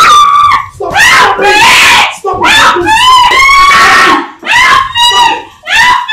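A woman screaming loudly: about five long, high-pitched screams in quick succession, with only short breaths between them.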